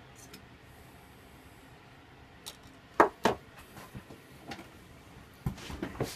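Sharp knocks and clinks of a small cup being set down inside a glass mason jar and the jar's lid being fitted. There are two loud knocks about three seconds in and a few lighter ones near the end.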